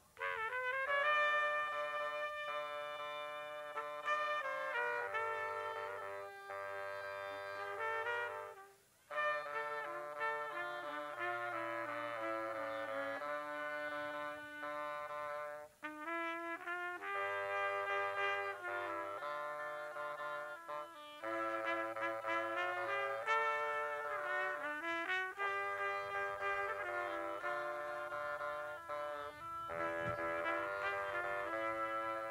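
A live trumpet and bassoon play a classical-style piece together, the bassoon holding a low stepping bass line under the trumpet. The music breaks off briefly twice, about nine and sixteen seconds in, between phrases.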